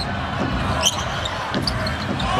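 Basketball being dribbled on a hardwood court, over steady arena background noise, with a few short sharp sounds mixed in.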